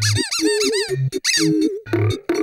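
High-pitched cartoon squeaking from a cockroach character: a quick run of rising-and-falling squeaks, then a shorter second run, over background music.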